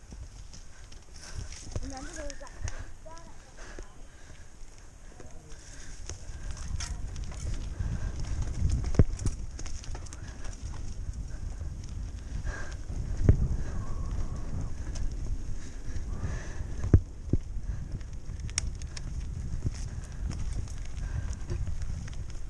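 Mountain bike rolling over a dirt trail: a low rumble of tyres and wind that grows after the first few seconds, broken by sharp knocks and rattles as the bike goes over bumps, three of them standing out in the second half.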